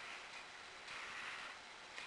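Quiet room tone: a faint steady hiss, with a slightly louder soft swell of noise about a second in.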